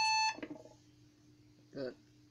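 Electric guitar holding a high note at the end of a slide, steady and then muted suddenly about a quarter of a second in. A faint low tone lingers afterwards.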